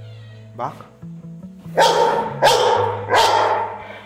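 A grey pit bull–type dog barking three times in quick succession, loud and deep.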